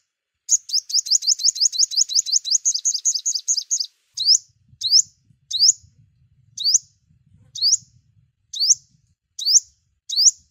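A bird chirping with high, sharp, upslurred chirps. About half a second in comes a fast run of about eight chirps a second, lasting some three seconds. Single chirps then follow about once a second.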